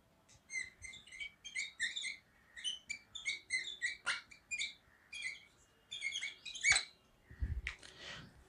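Dry-erase marker squeaking against a whiteboard while a word is written: a run of short, high squeaks in clusters, one for each stroke, with a couple of sharper taps of the marker tip.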